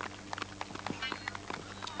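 Running footfalls of a javelin thrower's run-up on a synthetic track, a quick irregular series of sharp taps, over a steady low hum.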